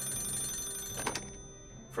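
A telephone bell ringing in one burst of about a second, over soft background music.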